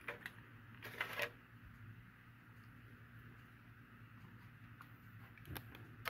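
Quiet room with a steady low hum, and a few faint clicks and a brief rustle about a second in as a small diecast toy truck is handled and set down on a display turntable.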